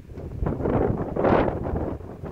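Wind gusting across the microphone: a rush of noise that swells for about a second and a half, peaks just past the middle, then falls away.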